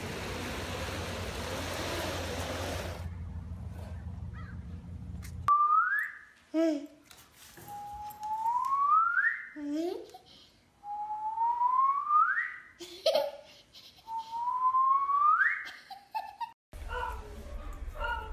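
Four long whistled notes, each sliding upward in pitch, with a dog answering in between with short, lower, rising howls.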